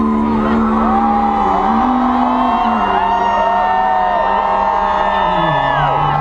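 A live country band holding sustained chords, the low notes changing pitch a few times, while the crowd cheers and whoops over the music.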